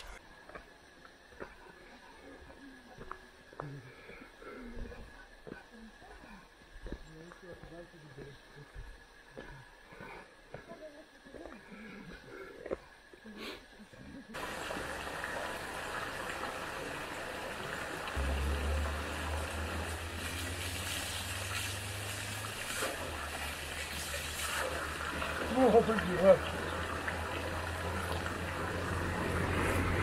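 Faint footsteps on a stony dirt path, then from about halfway a steady rush of spring water pouring from an overhead pipe and splashing onto the ground. A low rumble joins a few seconds after the water starts.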